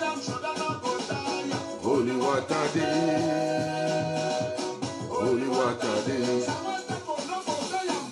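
A recorded song playing: a singer's voice over busy, regular percussion.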